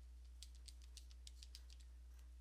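Faint, irregular clicks of computer keyboard keys, about seven light keystrokes, mostly in the second second, as a dimension value is typed in. A steady low electrical hum sits underneath.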